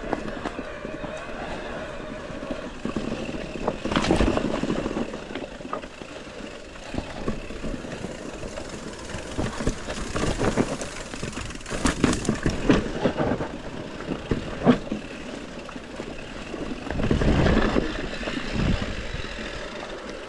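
Mountain bike descending a rough trail: steady tyre and rolling noise with rattles and a run of sharp knocks over bumps, the sharpest about 15 seconds in.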